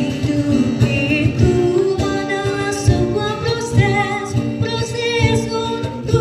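A solo voice singing a melody with vibrato over a steady acoustic-guitar accompaniment.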